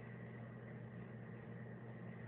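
Steady low mechanical hum with a thin, faint high whine above it: the background noise of machinery running in the room.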